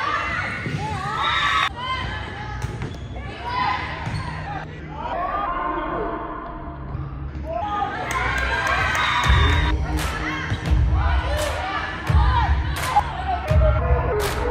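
Indoor volleyball rally in a gym: sharp ball strikes and players' and spectators' voices calling out, with echoing hall sound. Background music with a low bass beat runs underneath and pulses more strongly from about nine seconds in.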